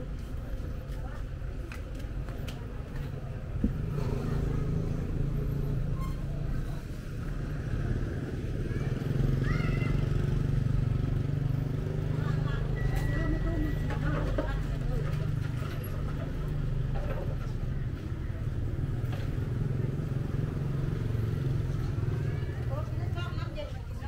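A motor engine, likely a motorcycle or other vehicle nearby, runs with a steady low rumble that grows a little louder about four seconds in, under the outdoor ambience of a small street market with occasional bits of people's voices.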